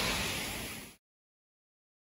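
Steady outdoor background noise that fades out over about a second, then dead silence where the audio has been cut at an edit.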